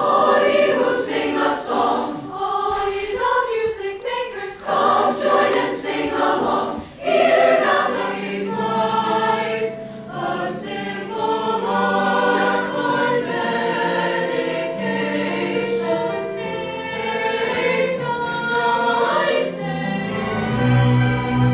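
A mixed-voice student choir singing. It sings short phrases at first, then from about eight seconds in holds longer, sustained chords under the upper voices.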